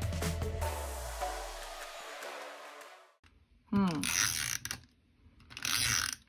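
Background music that stops about halfway through, followed by two short scratchy bursts of an adhesive tape runner being rolled along the back of a paper strip.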